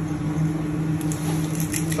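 A hand pepper mill grinding, a quick run of dry clicks starting about a second in, over a steady low hum of kitchen equipment.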